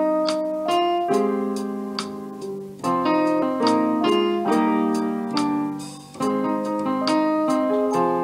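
Instrumental music: a keyboard plays a slow run of chords, each struck note ringing on. It is the intro of the song, with no singing yet.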